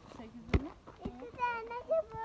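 Children's voices, with one short sharp knock about half a second in.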